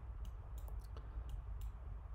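A handful of faint, irregular computer mouse clicks over low room hiss.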